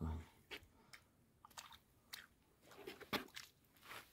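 Faint, irregular small splashes and slurps from a hooked fish thrashing and gulping at the water surface near the bank.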